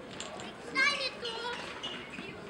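Distant outdoor voices with one high-pitched shout, like a child's call, about three quarters of a second in, over faint background chatter.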